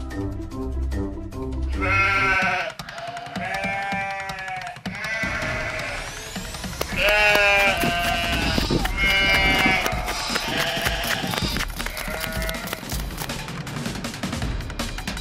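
A couple of seconds of music, then a series of about eight wavering, bleat-like cries, each lasting under a second, in the manner of a comedic bleating sound effect.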